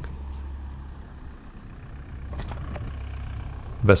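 Steady low rumble of riding a MicroGo V2 electric scooter along pavement, with a couple of faint clicks about two and a half seconds in.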